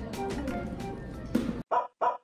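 Light background music that cuts off about one and a half seconds in, followed by two short dog barks in quick succession near the end.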